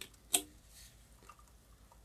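Tonic water poured from a can into a glass of gin: a single sharp clink about a third of a second in, then faint fizzing ticks as it runs in.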